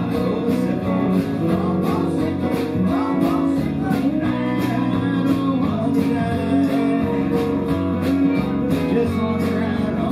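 Live folk-rock instrumental break: strummed acoustic guitar and electric guitar in a steady rhythm, with a harmonica carrying a wavering melody over them.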